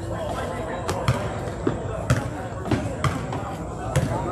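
Basketball being dribbled on a hardwood-style gym floor, about five sharp bounces at uneven spacing, ringing in the large hall.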